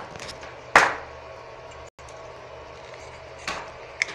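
A single sharp knock or clack about a second in, followed by low steady room noise and a softer rustle near the end.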